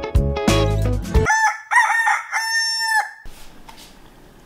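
Background music ends about a second in, then a rooster crows once, a cock-a-doodle-doo sound effect signalling morning.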